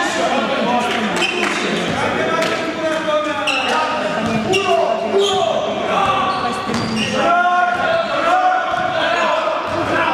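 A basketball bouncing on a gym floor during play, the sharp bounces echoing in a large sports hall, with the shouting voices of players and spectators throughout.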